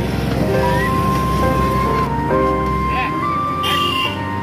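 Background music: a melody of long held notes that step up and down, with a few sliding notes.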